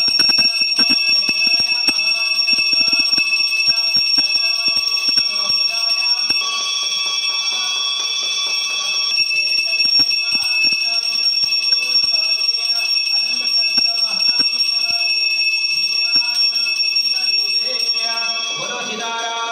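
Temple bells ringing continuously during the aarti lamp offering, a steady high ringing over a fast clatter of strokes, with a second, higher ring joining for a few seconds in the middle.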